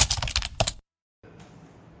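A quick run of sharp clicks and taps lasting under a second, then the sound cuts out completely; after a short gap a faint steady background follows.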